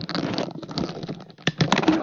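Loud crackling and rustling from a faulty microphone connection, in two stretches with a short dip between them, the sign of the mic failing.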